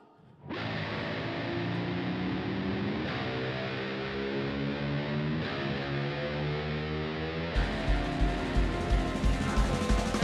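Live rock band music: sustained distorted electric guitar and keyboard chords, with drums and bass coming in on a heavy beat about three-quarters of the way through.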